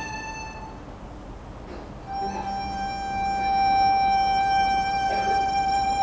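Chinese traditional orchestra music in slow held notes: a high sustained note fades out just under a second in, and after a short hush a new long note enters about two seconds in and swells.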